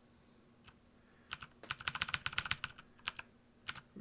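Computer keyboard being typed on: a single keystroke, then a quick run of clicking keys from about a second in. A faint steady hum sits underneath.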